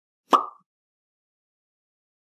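A single short cartoon 'pop' sound effect, about a third of a second in, a sharp click with a brief tone.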